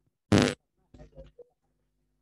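A short, loud burst of breath and voice from a person close to the microphone, followed by a few faint murmured sounds about a second in.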